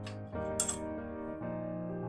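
Soft piano music, with two light metallic clinks, one at the start and a brighter one about half a second in: a small metal lantern and its wire handle being set down on a shelf.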